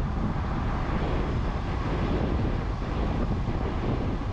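Wind rushing over the microphone of a camera on a moving 1995 Piaggio Porter minivan, a steady rush with road and engine rumble underneath.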